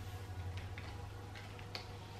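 Faint, irregular clicks and taps of tarot cards being handled on a wooden table, over a low steady hum.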